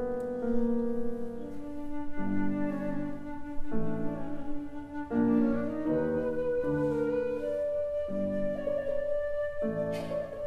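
Concert flute, a Burkart, and grand piano playing classical chamber music live: the piano plays shifting chords under long held flute notes with vibrato.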